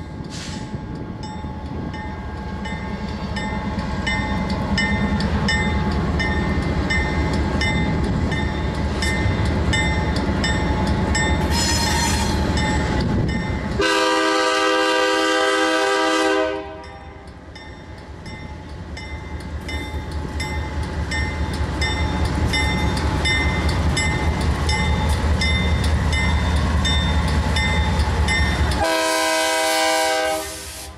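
BNSF GE C44-9W diesel-electric locomotive (16-cylinder 7FDL engine) approaching, its engine rumble growing louder as it nears. It sounds its multi-chime air horn: a brief toot just after the start, a long blast of about two and a half seconds around the middle, and another long blast beginning near the end.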